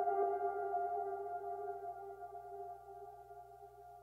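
Minimal deep tech outro: a held electronic chord of several steady tones, with no beat, fading out smoothly.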